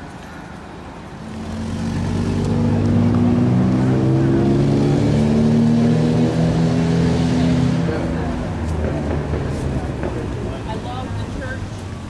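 A motor vehicle's engine passing along the street, swelling from about a second in, loudest for several seconds, then fading away.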